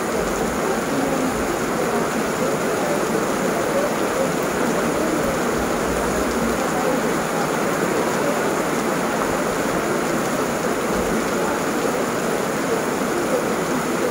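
Heavy rain falling steadily, a dense, even hiss of drops with no let-up.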